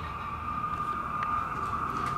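A steady high-pitched tone, holding one pitch, over a low rumbling background, with a faint click about a second in.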